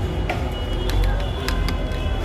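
Street noise with a steady low traffic rumble and voices, and a few sharp clinks of a steel ladle against the sherbet pot and cup about halfway through and near the end.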